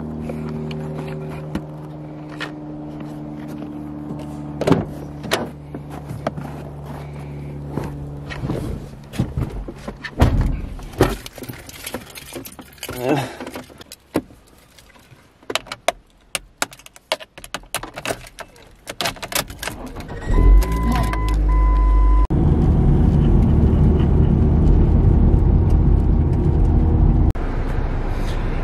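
A car's engine humming steadily, then a run of sharp clicks and knocks such as keys and door handling, a dashboard chime about twenty seconds in, and a loud steady engine rumble inside the car's cabin near the end.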